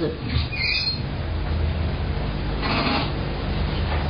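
Steady low mains hum and tape hiss of an old cassette recording in a pause between speakers, with a short noise burst about half a second in and another about three seconds in.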